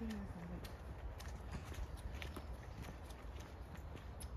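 Footsteps of a person walking on a paved path, about two steps a second.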